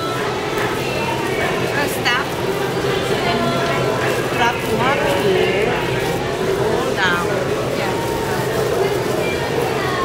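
Indistinct voices talking, with no clear words, over a steady low hum.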